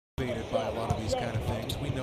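A basketball being dribbled on a hardwood arena court, a few separate bounces.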